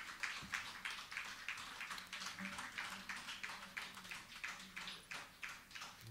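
Faint, sparse applause from a small audience after a song: separate hand claps, a few a second.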